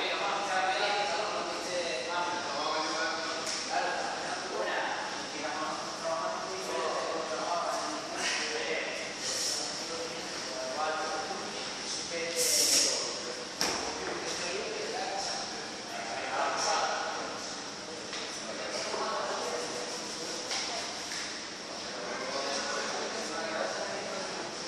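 Indistinct voices talking in a large, echoing gym hall. About halfway through comes a brief hiss, the loudest moment, followed a second later by a single sharp knock.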